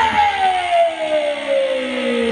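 Amplified electric guitar holding one sustained note that slides slowly and steadily down in pitch through the stage PA, leading into the start of the next song.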